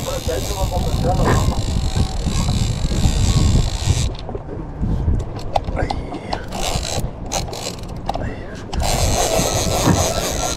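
Shimano TLD 2-Speed lever-drag reel being cranked by hand, its gears turning and clicking as line is wound in on a hooked fish. A steady rush of noise fills the first four seconds.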